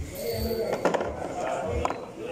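People talking over background music with a steady low beat about twice a second, and two sharp clicks about a second apart in the middle.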